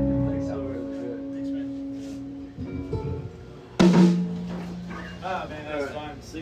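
A live band's last electric guitar chord ringing out and fading away, then a single sharp hit with a held low note about four seconds in, as the jam ends.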